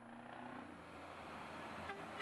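Truck sound effect in a TV advert: a steady rushing road-vehicle noise with a brief low tone in the first half second.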